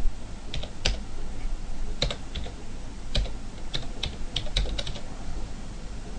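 Computer keyboard keys pressed one at a time at an uneven pace, about fifteen sharp clicks with short bunches of quick strokes, as a date is typed into a form.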